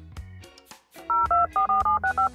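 Soft background music with a low beat, then from about a second in a quick run of short, loud two-tone beeps like telephone keypad dialing, a subscribe-button sound effect.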